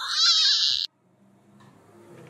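A woman's high-pitched, wavering squeal that cuts off abruptly less than a second in. It is followed by faint background music.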